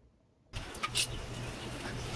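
Quiet room tone for about half a second, then an abrupt jump to a steady low hum with a haze of noise. A few sharp knocks and rustles come just after the jump, from a handheld phone being moved through a commercial kitchen.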